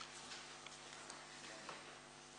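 Quiet room tone with a low steady hum and a few faint, scattered clicks, the sound of councillors pressing buttons on their desk voting consoles during an electronic attendance check.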